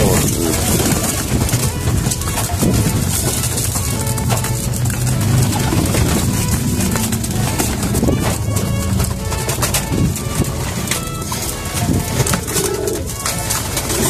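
A flock of domestic pigeons cooing in low, steady tones, with frequent short flutters and scuffles of wings as the birds crowd together in the loft.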